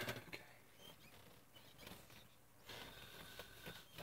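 Near silence: room tone with a few faint light clicks, mostly in the first second, and a faint rustle near the end.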